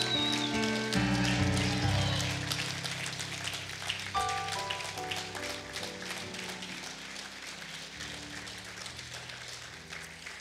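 Congregation clapping over soft music with sustained chords; the applause thins and dies down through the second half.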